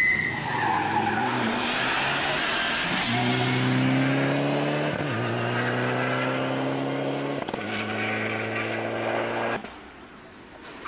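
Rally car going through the corner with a brief tyre squeal, then accelerating hard away, its engine pitch climbing and dropping at two upshifts about five and seven and a half seconds in. The sound cuts off suddenly near the end.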